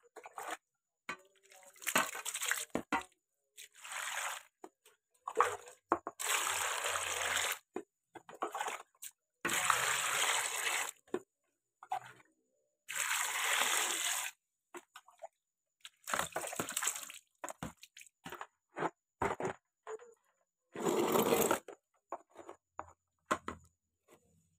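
Water poured from a plastic container over water apples in a plastic basin, in several pours of one to two seconds each, with shorter splashes and sloshing between as the fruit is washed.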